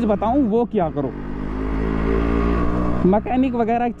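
Yamaha RX100's single-cylinder two-stroke engine under way, its steady note growing louder over about two seconds as the bike pulls.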